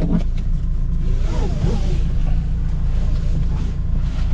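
Car engine and road noise heard from inside the cabin: a steady low drone, with a hiss that swells about a second in and eases off again.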